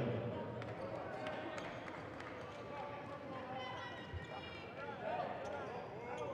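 Arena ambience during a stoppage in a basketball game: a steady crowd murmur with distant voices calling out in the hall, and a single basketball bounce on the hardwood about four seconds in.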